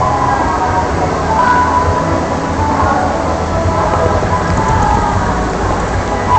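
Log flume boat floating along its water channel: a steady rush of flowing water with a low rumble underneath.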